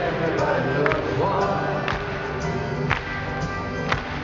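Live pop band playing, with a sharp beat about once a second and a man's voice over it, recorded from the audience in a large hall.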